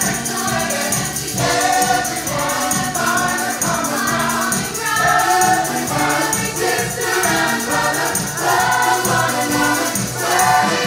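Ensemble choir singing an upbeat gospel-style show tune over a band with a steady beat.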